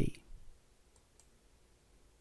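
A man's narrating voice ends a word right at the start, then near silence with a faint click or two.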